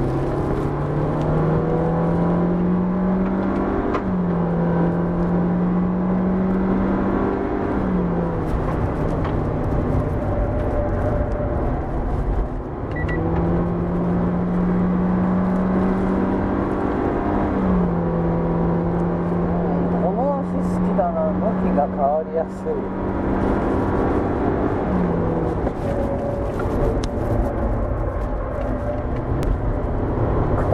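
Toyota Vitz GR-series car's four-cylinder engine heard from inside the cabin, working hard on track: its note climbs in pitch and then steps back down about four times.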